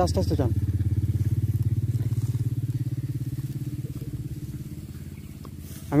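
A small engine running at a steady pitch, with a low, rapid pulsing. It fades gradually over about five seconds, as if moving away.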